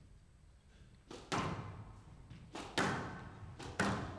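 Squash ball struck by rackets and hitting the court walls in a rally: three pairs of sharp knocks, each pair about a second after the last, echoing in the hall.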